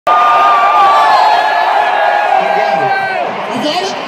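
Large concert crowd cheering, with several long high-pitched screams held over the noise that fade out about three seconds in. Voices talking come in near the end.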